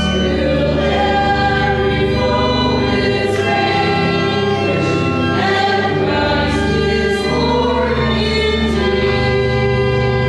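Voices singing a hymn in the church with organ accompaniment under them, steady sustained notes moving from chord to chord: the closing hymn at the end of Mass.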